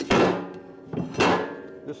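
An aluminium motorcycle crankcase half knocked twice against a wooden workbench as it is handled and set down: two sharp clunks, one at the start and one about a second in, each with a brief metallic ring.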